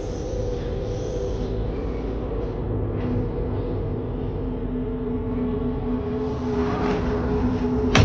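Dark ambient background music: a low sustained drone holding two steady tones over a deep rumble, with no clear beat.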